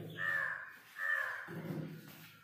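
A bird calling twice: two short, harsh calls about a second apart.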